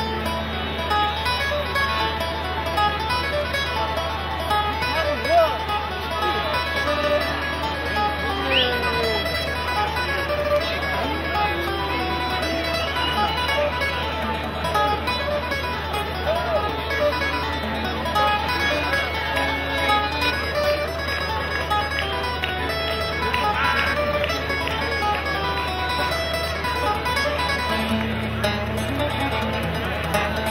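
Acoustic guitar and button accordion playing a traditional tune together live, a run of quick melody notes over the guitar's accompaniment.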